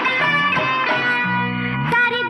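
Bollywood film-song music in an instrumental passage without singing, with a held low chord in the second half.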